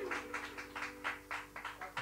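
The last chord of two acoustic guitars ringing out and fading, with a faint held tone lingering. A light, steady ticking runs under it, about five ticks a second.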